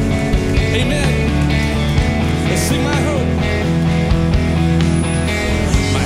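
Live worship band playing a rock song: drum kit with cymbals, electric bass and acoustic guitar together at a loud, steady level.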